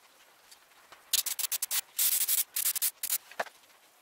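Fingers rubbing over a painted helmet shell: a string of short scratchy rubs starting about a second in and lasting about two seconds, the longest stretch near the middle.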